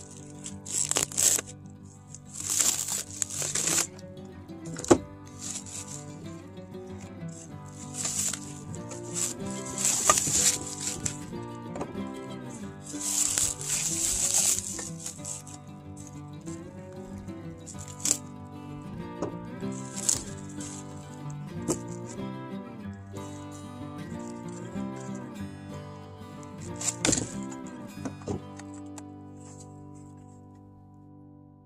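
Instrumental background music with sustained notes, over which plastic shrink-wrap crinkles and tears in several short bursts as cement mixer parts are unwrapped. The bursts are loudest in the first half and once more near the end.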